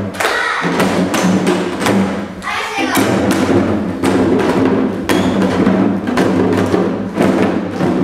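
Janggu hourglass drums struck in a quick, uneven rhythm of sharp strokes over steady sustained tones of Korean traditional accompaniment music, with a short lull midway.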